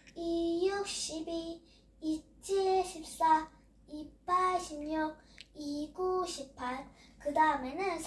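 A young girl chanting the two-times table in Korean in a sing-song voice, one short held note per syllable.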